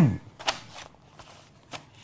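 The tail of a man's word, then a short lull in a studio with faint rustling and a few soft clicks of handling noise.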